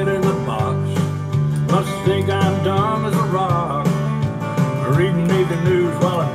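Country-style music with guitar under a bending, wavering melody line.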